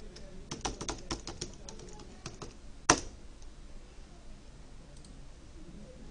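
Computer keyboard typing: a quick run of keystrokes for about two and a half seconds, then one louder click a little before three seconds in.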